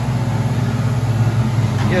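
A tow truck's engine idling steadily, a low even hum.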